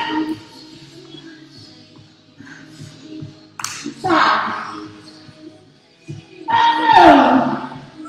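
Workout music playing over a speaker. Two louder swells come about four and seven seconds in, and the second swoops down in pitch.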